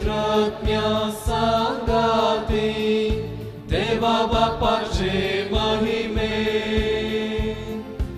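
A church hymn sung with instrumental accompaniment and a steady beat, about two pulses a second.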